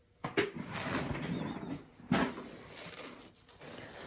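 Handling noise at the work table: a knock, a second or so of scraping and rustling, then a second knock about two seconds later followed by more quieter scraping.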